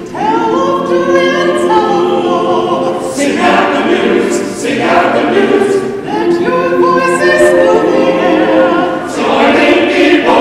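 A choir singing in phrases, with short breaks between them.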